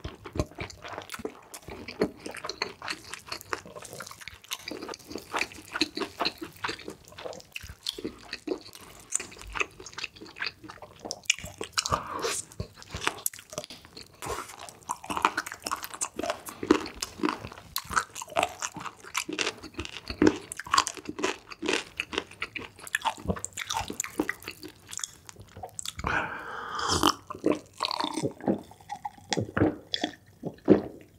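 Close-miked eating: wet chewing and biting into a glazed roast chicken leg, with many small crackles and smacks of the mouth. Near the end, a few gulps of water from a glass.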